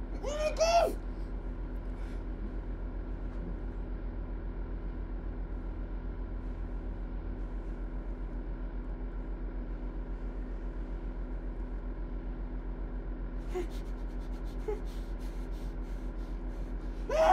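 A man's muffled moan through the tape over his mouth for about the first second, then a steady low hum with several held tones and a faint even pulse. A few faint clicks come near the end.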